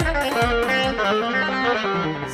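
Live wedding band music: a plucked long-necked saz plays a melody with sliding notes. A steady drum beat, about two and a half beats a second, stops about half a second in.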